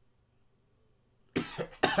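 Near silence, then about a second and a half in a man bursts out laughing: two sudden bursts of laughter that run straight into his speech.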